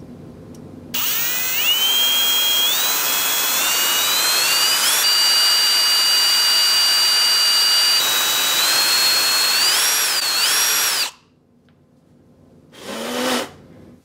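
Power drill with a twist bit boring into the aluminium bottom edge of an iPhone 7: the motor whine climbs in steps, holds steady, then wavers up and down before cutting off suddenly about eleven seconds in. A brief burst of noise follows near the end.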